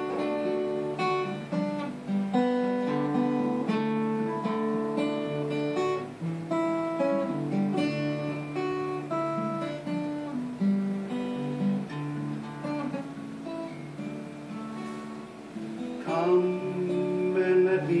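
Acoustic guitar playing an instrumental passage of chords and changing notes. A man's voice comes in singing near the end.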